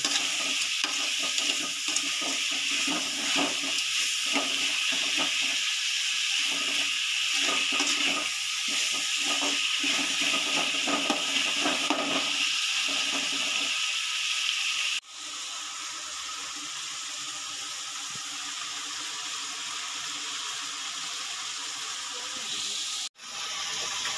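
Onions and tomatoes frying in oil in an aluminium kadai, a steady hissing sizzle, with a spatula repeatedly stirring and scraping through the first half. About fifteen seconds in the sound drops to a quieter, even sizzle.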